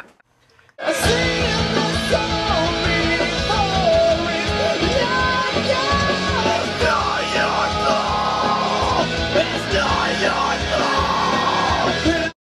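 Loud rock music with a screamed lead vocal. It starts abruptly about a second in and runs at a steady loudness until it cuts off sharply at the end.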